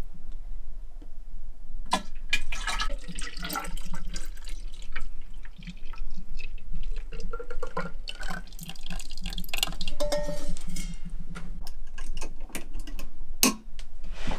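Raw milk poured in a thin stream from a metal milk can into a glass jar of longfil, splashing and pouring steadily from about two seconds in until near the end. There is a sharp click as the pour begins and another shortly before the end.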